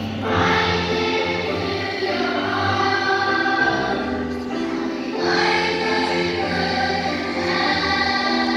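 A massed children's choir singing with a live band, sustained sung phrases over a steady bass line, with a new phrase swelling in about half a second in and another about five seconds in.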